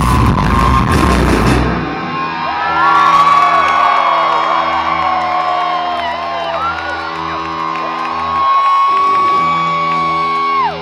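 Live rock band playing at full volume, drums and all, then cutting off about two seconds in. A held chord rings on underneath while the crowd whoops and cheers.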